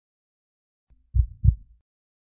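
Heartbeat sound effect: two low, dull thumps about a third of a second apart, a lub-dub, a little over a second in, in otherwise dead silence.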